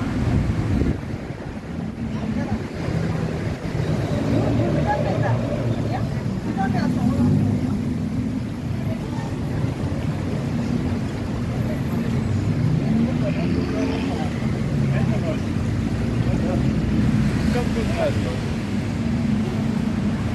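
Busy city street ambience: a steady rumble of road traffic, with people talking as they walk by.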